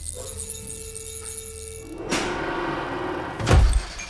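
Produced intro sound effects under a title card. A low rumble with a few steady tones runs for about two seconds, then a rising rush of noise builds up, and a heavy low hit lands near the end as the picture glitches out.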